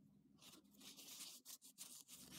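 Near silence with faint paper-towel rustling as a glass lens in a wire frame is wiped, in a few short scuffs in the second half.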